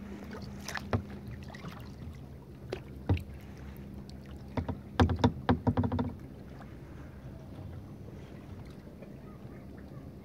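Kayak paddle working calm water: the blade dipping and dripping, with a quick run of sharp clicks and splashes about five seconds in. A steady low hum runs underneath.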